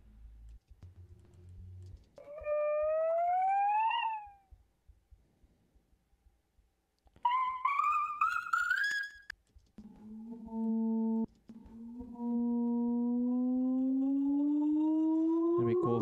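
An electronic "bip" sample played back in a DAW at several pitch transpositions, each pass a single pitched tone with overtones. A rising tone comes about two seconds in and a higher rising tone around seven seconds. From about ten seconds a low steady tone is followed by a long, slowly rising one.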